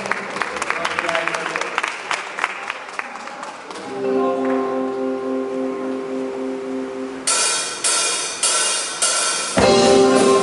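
Live rock band starting a song: rapid light taps first, then a held electric guitar chord with one low note pulsing. About seven seconds in, loud drum kit hits with cymbal come in roughly every half second, and the full band enters just before the end.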